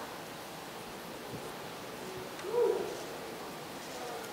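Quiet room tone with one brief, faint hoot-like vocal sound about two and a half seconds in.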